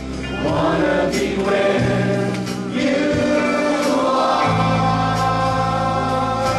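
Live Christian praise and worship band playing: vocalists singing together over electric and acoustic guitars, bass guitar and keyboard, with held bass notes that change about two thirds of the way through.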